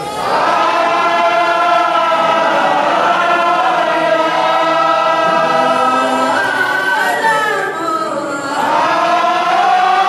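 A group of men chanting Mawlid praise songs together in long held notes, led by one voice on a microphone, with a short dip in the singing near the end.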